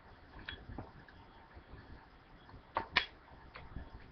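A few faint, short clicks and light taps over quiet room tone, small handling noises. The loudest two come close together about three seconds in.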